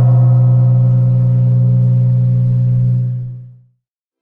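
A single low sustained tone with many overtones, an intro sound effect, holding steady and then fading away about three seconds in.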